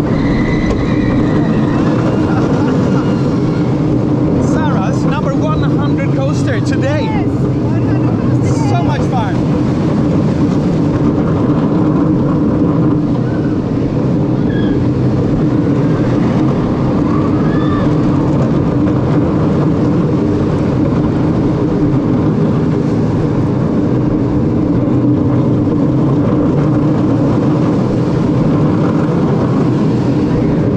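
A small steel roller coaster train running steadily along its track, with wind rushing over the ride-mounted camera's microphone as a continuous loud rumble.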